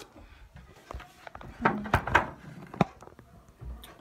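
Handling noise of a phone camera being moved and set in place: a few scattered knocks and clicks as it is picked up and propped against things, with a short low rumble of fingers on the phone near the end.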